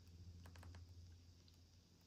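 Near silence with a low steady hum, broken by a few faint clicks of buttons on a handheld gimbal-camera remote: a quick cluster about half a second in and one more later.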